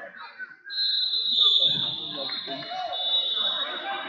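A referee's whistle gives a long, shrill blast starting about a second in and trailing off near the end, over the chatter of a crowd in a big gym.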